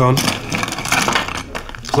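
Metal ice scoop digging into a bowl of ice cubes, the cubes clattering and scraping against the scoop and each other.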